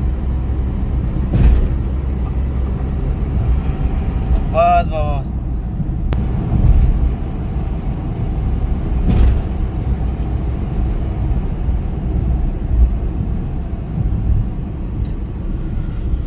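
Cabin sound of a freshly overhauled Renault Kwid's three-cylinder petrol engine and tyres at a steady cruise of about 80 km/h: a low, even drone with no change in pitch. Two brief knocks come through, one near the start and one about halfway.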